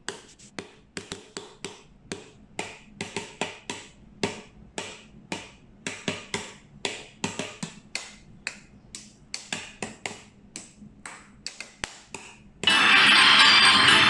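Dry, sharp percussive taps, a few a second and unevenly spaced, like a wood block or finger snaps. Near the end, loud full music cuts in suddenly.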